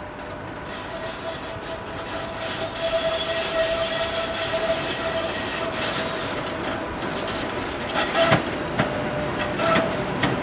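Electric locomotive hauling a passenger train into the station, the rumble of wheels on rail growing louder as it approaches, with a thin steady whine over it. Several sharp clacks near the end as the wheels cross rail joints or pointwork.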